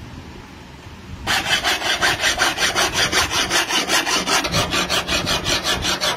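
An abrasive block rubbed rapidly back and forth along a guitar's fretboard and frets, dressing the frets. It starts about a second in, as loud, even scraping strokes at about six a second.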